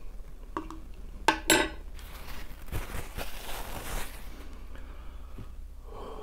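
A metal spoon clicking and knocking against a plastic dessert cup, with the loudest knocks about a second and a half in, followed by a few seconds of soft scraping noise, then quiet room tone.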